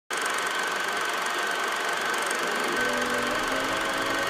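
Film projector running: a steady whirring hiss with a constant high whine through it, starting abruptly at the open.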